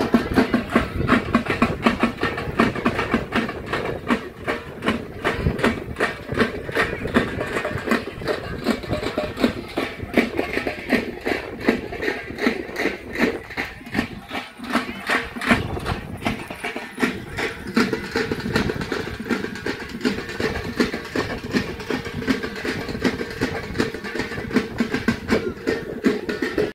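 Drums played in a fast, even beat of several strokes a second, over a steady held tone.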